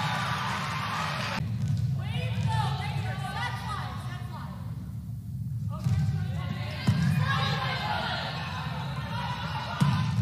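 Indoor volleyball match ambience in a large gym hall: crowd and players' voices, with an occasional thud of the ball.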